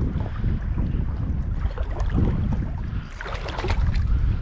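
Water sloshing and lapping right at the microphone around a wading angler, under a heavy low rumble of wind on the microphone, with a short flurry of splashing near the end.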